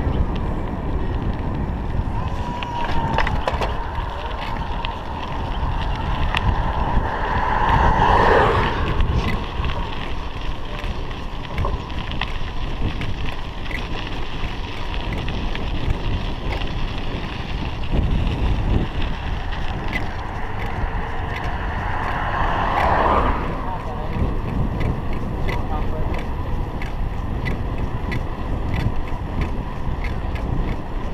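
Wind rushing over a chest-mounted action camera's microphone as a bicycle rolls along a paved road, a steady low rumble with light ticking. The sound swells louder twice, about eight seconds in and again a little past twenty seconds.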